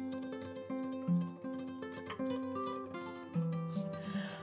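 Soft background music played on a plucked guitar: single notes picked one after another in a slow melody.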